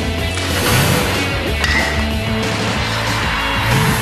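Television sports-show opening theme music with a heavy, steady bass, and a rising whoosh effect twice: about two-thirds of a second in and again near the end.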